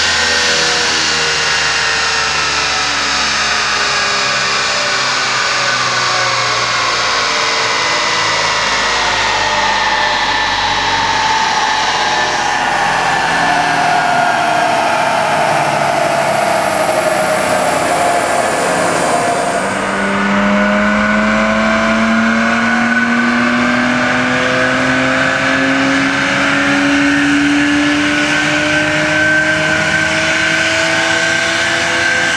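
BMW 335i's twin-turbo inline-six running on a chassis dyno: engine and rollers wind down with the pitch falling slowly for about twenty seconds, then about two-thirds of the way through the engine takes load again and the pitch climbs steadily as revs build in a dyno pull.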